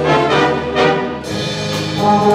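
Jazz big band playing: the saxophone, trumpet and trombone sections hold full sustained chords over the drum kit's steady cymbal strokes. The band moves to a new chord a little past halfway.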